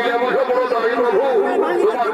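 A steady, continuous voice over the murmur of a watching crowd's chatter; no drumming stands out.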